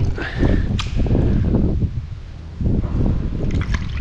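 Rubber-gloved hand rummaging in a blocked drain full of muddy water and sludge: irregular wet squelching and sloshing, with a few sharp clicks, over a steady low rumble.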